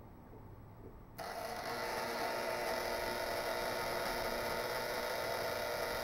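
Violet ray high-frequency electrotherapy machine switched on about a second in: a sudden, steady electrical buzz that swells slightly and then holds.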